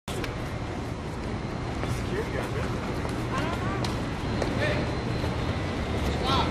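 Faint voices of people talking in the background over a steady low rumble, with a few light clicks.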